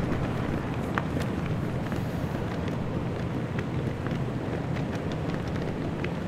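Outdoor wind buffeting the microphone, a steady low rumbling noise with a few faint clicks.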